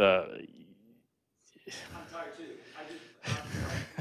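Indistinct, quiet talk away from the microphones, with a short pause about a second in and a louder breathy burst near the end.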